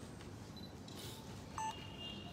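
A single short electronic beep about one and a half seconds in, over the faint steady room noise of a large hall.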